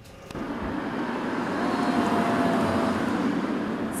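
Steady outdoor traffic and road noise, a wash of sound without distinct events that swells in over the first second and then holds.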